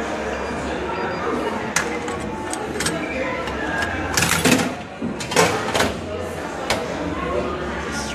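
Crowd chatter from many voices in a busy indoor public space, with several sharp knocks and clatters, the loudest coming in two quick clusters a little past the middle.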